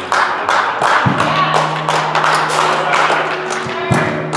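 Congregation clapping in a quick, uneven rhythm, about three sharp claps a second. About a second in, a low sustained musical note comes in under the clapping.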